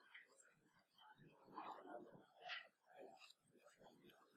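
Near silence with faint, low voices murmuring in the background.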